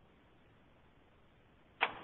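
Near silence on a telephone-bandwidth conference-call line, broken near the end by a short sharp click as the next voice comes on.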